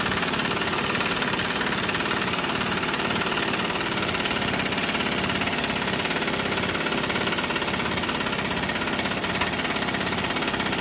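Impact wrench hammering continuously on a subframe bolt through a long socket extension: a steady, rapid rattle of blows while the bolt is being broken loose.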